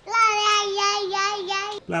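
A toddler's voice singing one long held note, steady in pitch with a slight wobble, that breaks off just before the end.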